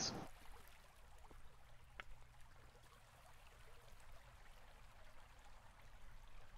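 Near silence: faint room tone with a low hum, and one faint click about two seconds in.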